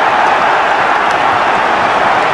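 Football stadium crowd cheering a goal just scored, loud and steady.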